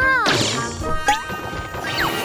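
Cartoon sound effects over light background music: a wavering, wobbling tone at the start, then a quick upward pitch slide about a second in and a downward slide near the end.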